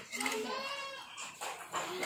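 A child's voice held in a long, wavering call, then shorter children's voices near the end, with no clear words.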